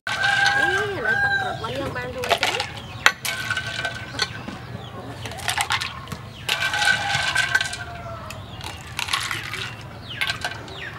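Metal ladle clinking against a glass jar as a drink is ladled out into a cup, in short sharp clinks. Chickens call in the background, with two long held calls, one near the start and one about two-thirds of the way in.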